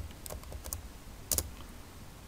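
A few separate keystrokes on a computer keyboard as an address is typed out, one louder than the others about a second and a half in.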